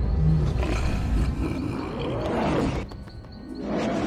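A deep, rumbling roar, like a large beast's, rising and falling in pitch, over dark background music. It breaks off about three seconds in, and a second swell follows near the end.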